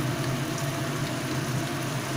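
Thin curry gravy boiling in a kadai, a steady bubbling over a constant low hum.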